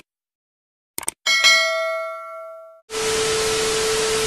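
Editing sound effects: two quick mouse-style clicks about a second in, then a bell chime that rings out and fades over about a second and a half. From about three seconds in, loud TV static hiss with a steady tone under it.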